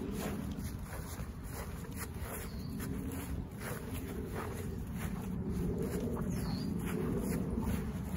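Footsteps through grass with a steady low rumble of wind on the microphone and irregular rustling.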